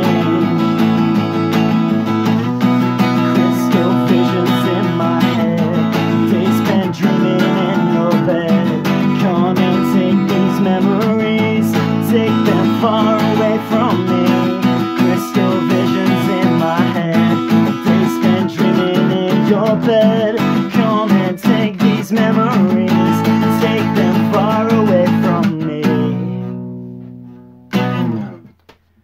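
Acoustic guitar strummed with a man singing along, a song played through to its close; near the end the last chord rings out and fades away.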